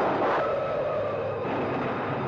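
Film background music: a few sustained notes that shift about half a second in, over a dense, steady rumbling noise.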